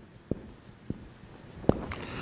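Felt-tip marker writing on a whiteboard: a few short, sharp strokes and taps of the tip against the board, the loudest about three quarters of the way through.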